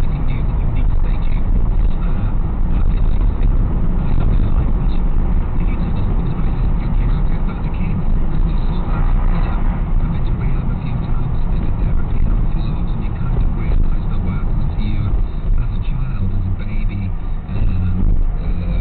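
Steady low rumble of a car's engine and tyres on the road, heard from inside the cabin through a windscreen dashcam's microphone while driving in slow city traffic.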